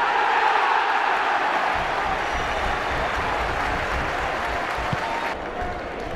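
Football stadium crowd cheering and applauding a goal, loudest at the start and easing off, then cut suddenly about five seconds in to quieter crowd noise.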